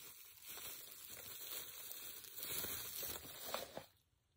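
Faint crinkling and rustling of plastic bubble wrap being unwrapped by hand from a small figurine, a little louder in the second half, with a light click near the end.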